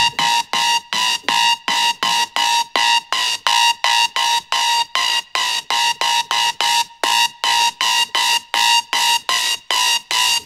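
Xfer Serum software synthesizer playing a harsh, horn-like wavetable patch made from an imported PNG image. It plays one short note over and over, about three times a second, with no sub-bass under it.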